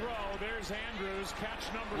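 A television football commentator's voice from the game broadcast, talking steadily and quieter than the nearby live speech, over a steady low hum.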